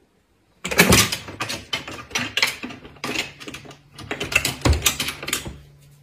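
A cat scrambling up a wall-mounted ladder, its claws and paws clicking and clattering irregularly on the rungs. The clatter starts about half a second in and dies away shortly before the end.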